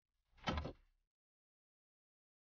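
A car door being opened: one short clunk of the handle and latch, about half a second in.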